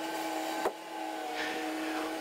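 Tracked skid-steer loader's engine running in sped-up footage: a steady mechanical hum with a high, slightly wavering whine, and a single short click about two-thirds of a second in.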